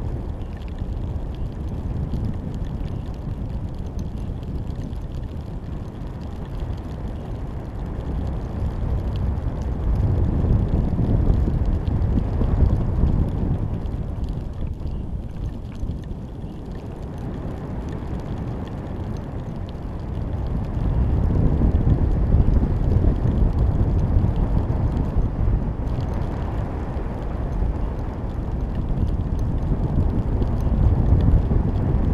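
Wind buffeting the microphone of a GoPro camera carried aloft under a high-altitude balloon: a low, muffled rush that swells and eases in long waves.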